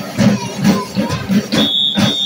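School drumline playing a steady beat on marching snare and bass drums, about four hits a second. About a second and a half in, a high, steady shrill tone starts over the drumming.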